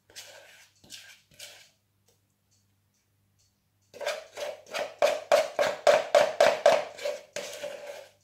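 A utensil scraping buttercream icing out of a ceramic mixing bowl: three scrapes, then after a short pause a fast run of about a dozen scrapes, around three a second, each with the same ringing note.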